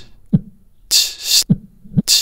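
A looped vocal beatbox pattern played back through the LoopTree app's beat repeat, running in reverse: a short low thump, a hissing burst about half a second long, then another thump.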